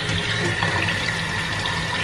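Kitchen faucet running, the stream splashing over a glass coaster held under it and into a stainless steel sink as the etching cream is rinsed off. The water noise is steady and cuts off suddenly at the end.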